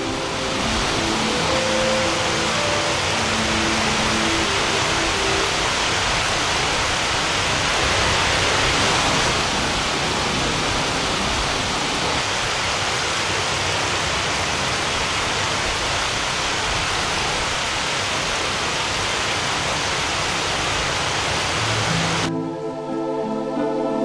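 A loud, steady rushing hiss with no pitch to it. The tail of the music fades under it over the first few seconds, and the hiss cuts off at the end as the music returns.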